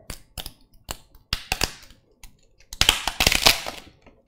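Irregular sharp clicks and taps at a desk, with a dense run of louder rapid clicks about three seconds in.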